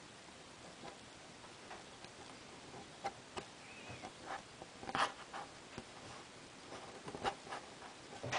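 Faint, irregular clicks and taps of a knitting tool and yarn working loops over the plastic pegs of a Knifty Knitter loom while purling, the sharpest tap about five seconds in.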